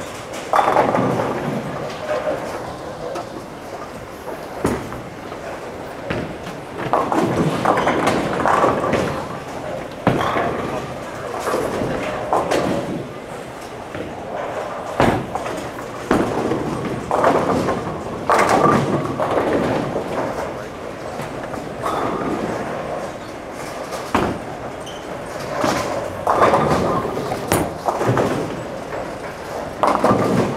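Bowling alley ambience: a hubbub of background voices with scattered thuds and clatter of balls and pins from the lanes.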